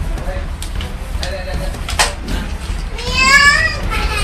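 Voices in a home, with a high-pitched child's voice calling out in the last second and a single sharp click about halfway through, over a steady low hum.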